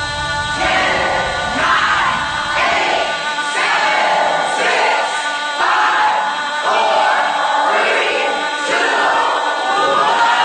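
A music track of voices singing together like a choir, entering under a second in with short phrases about one a second.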